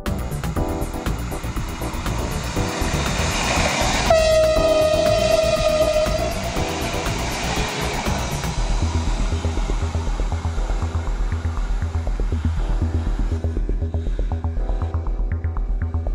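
A train horn sounds about four seconds in: one held note lasting about two seconds, falling slightly in pitch, over a rushing noise that swells just before it. Background music with a steady beat plays throughout.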